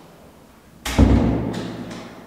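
An interior door slamming shut with one loud thud about a second in, the bang ringing on briefly in a bare, tiled room.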